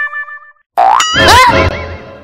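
Cartoon-style comedy sound effect: a quick rising glide about a second in, then a wobbling boing that fades away.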